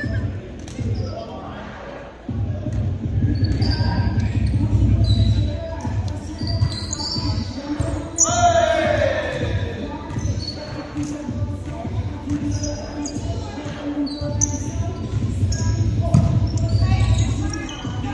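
Indoor volleyball play in a large gym: the ball is hit and bounces on the hardwood floor in a string of knocks that echo around the hall. A brief squeak about eight seconds in rises and falls in pitch.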